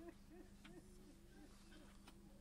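Near silence: a faint voice in short, repeated rising-and-falling syllables over a steady low hum.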